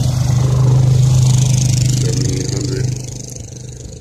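A nearby motor vehicle's engine running with a steady low drone, loudest about a second in, then dropping away about three seconds in.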